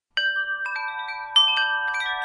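Chimes ringing: a handful of bright struck notes at different pitches, each ringing on and overlapping the next. The first comes just after the start, and a louder strike follows a little past the middle.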